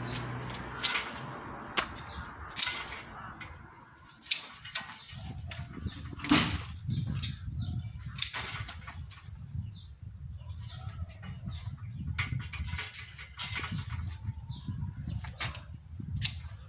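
Hand pruning shears snipping bare, woody grapevine canes during winter pruning: a series of sharp clicks at irregular intervals, about one every second or two.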